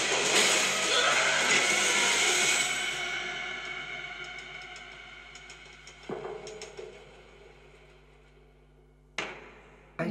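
Trailer soundtrack: a loud, dense music-and-effects mix that fades away steadily over several seconds. A low hit comes about six seconds in, and a sharp hit near the end.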